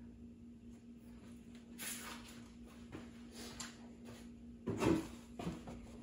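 Faint scattered rustling and light knocks of someone handling things over an engine bay, over a steady low hum.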